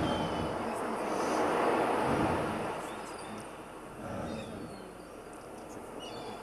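A rushing noise with no clear pitch that swells to a peak about two seconds in and eases off, then swells a little again about four seconds in.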